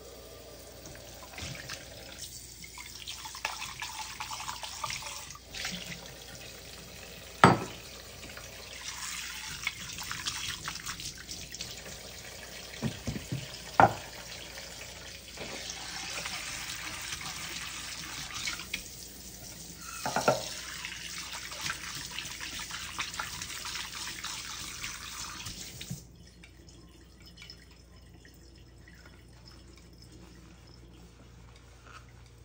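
Kitchen tap running into a stainless steel sink as pet bowls are rinsed by hand, the water splashing over them. Three sharp knocks of the bowls come through the water. The tap shuts off a few seconds before the end.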